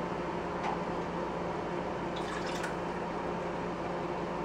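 Water sloshing in a glass marinara jar and pouring into the sauce pot, rinsing out the leftover sauce. It is a steady liquid sound, with a few faint clinks a little after the middle.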